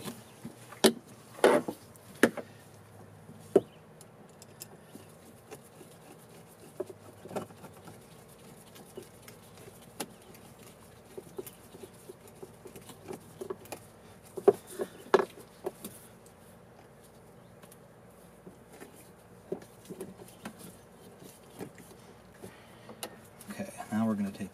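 Scattered small clicks and knocks of a screwdriver and gloved hands working hose clamps on a fuel-filter hose. The louder taps come about a second and a half in and again around fifteen seconds.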